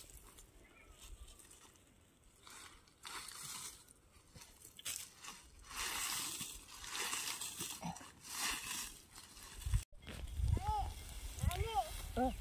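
Faint, irregular rustling and scraping of cow dung mixed with dry leaves being scattered by hand over a field. After a cut near the end, a high voice is heard faintly.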